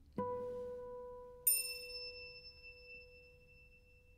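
Two ringing notes on bell-like percussion in a sparse passage of contemporary chamber music. A lower note is struck about a quarter second in, and a higher, brighter one about a second and a half in. Both ring on and slowly fade.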